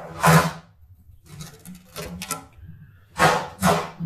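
Metal sheet pans being taken down from a shelf, scraping and clattering against each other in several short bursts, the loudest a little after three seconds in.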